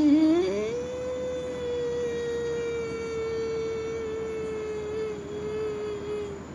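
A woman's voice holding one long hummed note as a yogic breathing exercise. It glides up in pitch over the first second, then holds steady, sinking slightly near the end.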